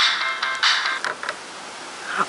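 A song playing loud through the small built-in speaker of an Olympus digital voice recorder, thin with little bass. About a second in it drops much quieter as a headphone plug is pushed into the recorder's jack.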